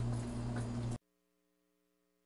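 Steady low electrical hum with room noise, cut off suddenly about a second in, leaving silence.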